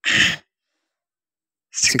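A man's voice: a short spoken sound, then over a second of dead silence, then speech resumes near the end.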